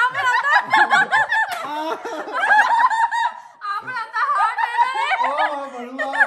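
Several people laughing together in quick, high-pitched giggles; a lower voice joins in near the end.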